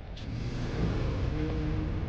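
A swelling whoosh-and-rumble sound effect for a magic spell as a blue glow gathers at a hand. Faint held tones come in near the end.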